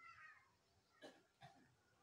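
Near silence, with a faint, short animal call that falls in pitch right at the start, then two faint clicks about a second in.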